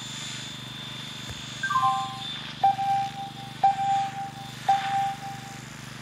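A model helicopter's rotor and motor running steadily with a high whine, while music starts over a PA system about two seconds in: a few short rising notes, then three held notes about a second apart, each opening with a sharp hit.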